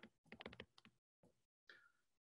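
Faint ticks of a stylus tapping and stroking on a tablet screen as handwriting is written, a few light clicks in the first half second or so, then near silence.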